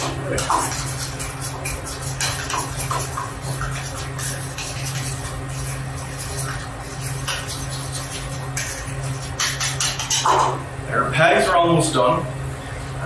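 A utensil stirring aioli in a ceramic bowl, with repeated light scraping and clicking against the bowl, over a steady low hum. A man's voice comes in near the end.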